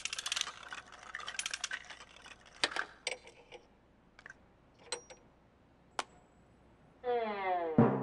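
Cartoon sound effects of plastic vending-machine toy capsules clattering: a dense rattle of clicks for about two seconds, then scattered single clicks. Near the end a tone slides downward and ends in a sharp hit.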